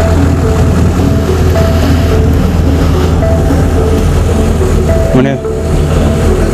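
Background music of soft synth and mallet tones under loud outdoor ambience: a heavy, steady low rumble with a haze of noise. A voice comes in briefly about five seconds in.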